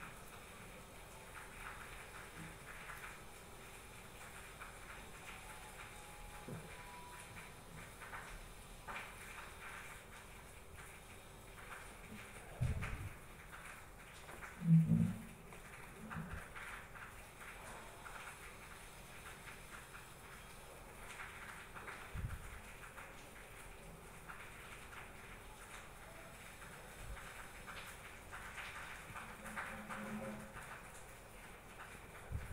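Low room noise with a few scattered soft knocks, the clearest about thirteen and fifteen seconds in, and one more a little after twenty seconds.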